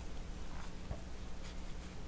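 Faint rustle of yarn being worked with a metal crochet hook, with a few light ticks.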